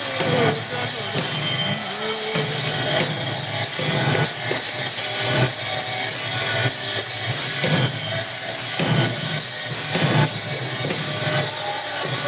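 Devotional aarti music: drums beating with a constant jingling of metal hand percussion ringing over it.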